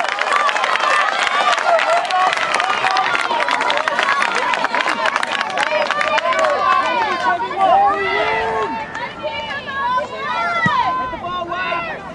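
Many voices shouting and calling over one another at a soccer match, with no clear words, and a rapid patter of short clicks through the first half.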